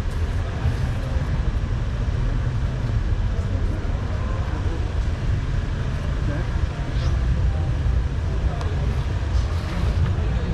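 Steady low rumble of outdoor urban background noise, the kind made by road traffic, with no distinct events.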